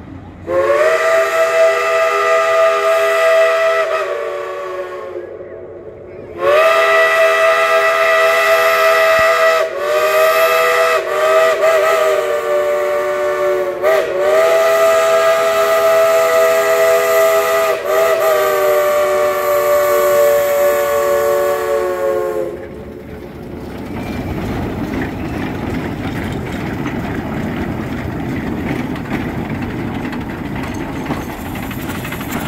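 Steam locomotive's multi-tone chime whistle: one blast of a few seconds, then a long blast of about sixteen seconds that dips briefly several times. After it cuts off, the low rumble and hiss of the locomotives rolling past.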